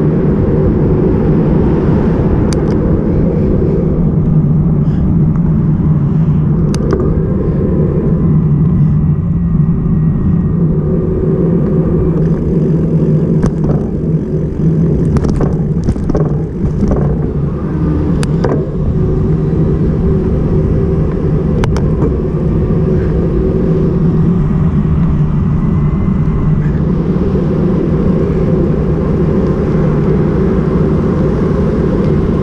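Loud, steady rumble of wind and road noise from a camera riding along on a moving bicycle. A cluster of sharp clicks and rattles comes around the middle.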